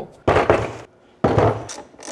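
Two short, heavy thuds about a second apart, each with a brief noisy tail, from 12 V LiFePO4 batteries being moved and set down on a wooden workbench.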